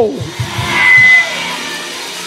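Church organ holding a sustained chord, with a high note held briefly about a second in.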